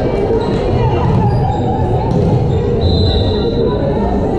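Gymnasium ambience during a volleyball rally: voices and hubbub from the crowd and players echoing in the hall, with hits of the ball and short high squeaks of sneakers on the hardwood court.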